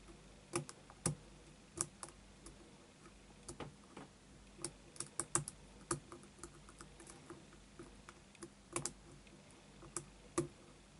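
A lock pick and tension wrench working inside the keyway of a six-pin Yale euro cylinder. They make light, irregular metallic clicks and ticks, some in quick little clusters, as the pick moves against the pins and warding.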